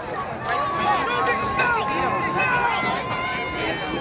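Crowd of spectators shouting and cheering runners on, many voices overlapping, with one long held call running through the middle.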